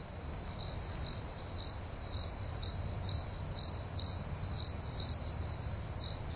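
Crickets chirping: a steady high trill with louder pulses about twice a second, over a low rumble.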